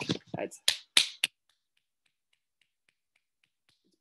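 A few sharp finger snaps in quick, even succession about a second in, beating out a regular rhythm, then near silence broken only by a few faint ticks.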